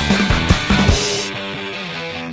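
Instrumental stoner/fuzz rock from a full band, with drums and bass pounding on a quick beat. About a second in they drop out, leaving sustained distorted electric guitar chords ringing on.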